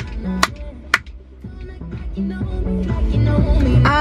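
A song playing on the car radio inside the cabin, with drum hits in the first second; the music drops in level briefly about a second in, then comes back up.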